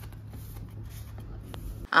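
Faint rustling and a few light clicks from hands handling things at a table, over a low steady hum.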